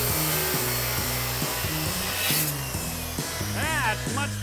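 DeWalt circular saw cutting into a wooden post, a steady cut that stops about two and a half seconds in.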